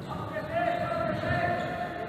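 Basketball being dribbled on a wooden gym floor. A voice shouts one long call from about half a second in.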